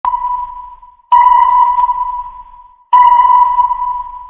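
Three sonar ping sound effects, at the start, about a second in and near three seconds. Each is a single clear ping that rings out and fades away.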